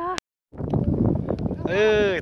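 A man's voice in short drawn-out vocal sounds, broken by an abrupt gap of total silence just after the start, then a rough rumbling noise and a drawn-out exclamation near the end.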